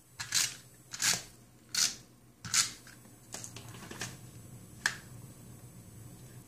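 Cardstock being handled while a tape-runner adhesive is drawn across it in short dry strokes, about seven of them, each under a second apart.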